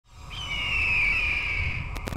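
Logo-intro sound effect: one long, slowly falling high screech in the manner of a bird of prey's cry, over a low rumble, fading in from silence at the start.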